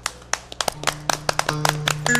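A few people clapping as the instrumental intro of a traditional Vietnamese vọng cổ song begins, with held string notes coming in about halfway through.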